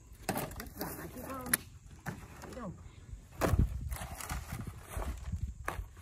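Thin dry wood veneer sheets handled and stacked by hand: a dry rustling with a few sharp clacks as the sheets strike one another, the loudest about three and a half seconds in, under low talk.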